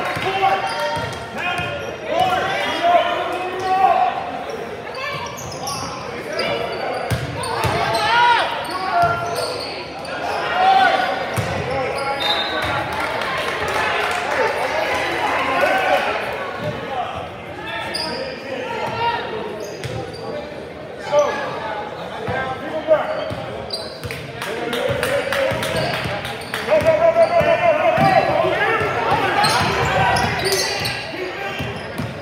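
Basketball game in a gym: a ball bouncing on the hardwood court among indistinct calls and shouts from players, coaches and spectators, echoing in the large hall. The voices grow louder and busier near the end.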